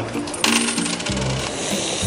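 A small metal object clattering on a hard tabletop about half a second in, then spinning down with a fast rattle that lasts under a second, over background music.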